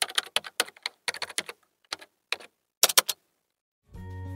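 Keyboard typing sound effect: quick irregular runs of key clicks, ending about three seconds in.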